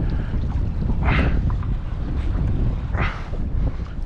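Wind buffeting the microphone with a steady low rumble, with two short hisses, one about a second in and one near three seconds.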